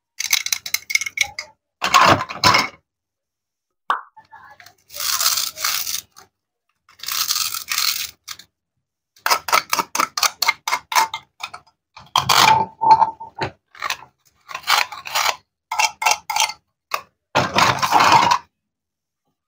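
Plastic and wooden toy cutting-fruit handled up close: quick clicks and knocks of the hard pieces, and a couple of longer rasping tears as velcro-joined halves are pulled and cut apart with a wooden toy knife.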